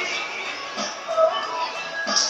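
Background music playing.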